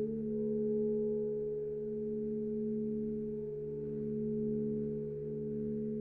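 Saxophone quartet (soprano, alto, tenor and baritone) holding a long sustained chord. The notes stay steady in pitch, and the lower ones swell and dip slowly from beating between close pitches.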